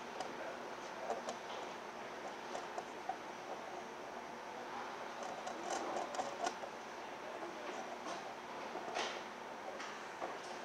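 Faint clicks and light rustling from small wire terminals and wires being handled and fitted onto a gauge pod's studs, over a steady room hiss; the busiest handling comes around the middle, with a sharper click near the end.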